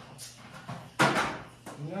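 A sharp knock and short scrape about a second in, from a plug and T adapter being handled and pushed at the socket behind a countertop microwave, with a lighter click just before.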